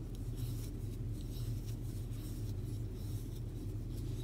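Soft, scratchy rubbing of yarn drawn over and through a crochet hook as chain stitches are worked, repeating a few times a second over a steady low hum.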